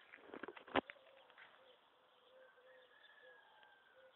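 Faint bird calls, a soft low note repeating at even spacing, with a quick run of clicks ending in a sharp knock just under a second in, the loudest sound.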